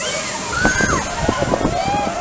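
Riders on a double-shot launch tower screaming and yelling as they are bounced up and down, in short rising and falling cries over a steady rushing noise.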